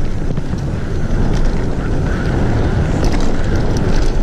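Mountain bike riding down a dirt forest trail: steady low wind buffeting on the microphone over tyre rumble, with a few light clicks from the bike.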